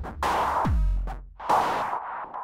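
Electronic drum-machine beat: a deep kick drum whose pitch drops, plus two short noisy snare-like hits. Their delay echoes are crunched up by analog saturation from an Elektron Analog Heat, and the EchoBoy delay ducks each time the kick hits.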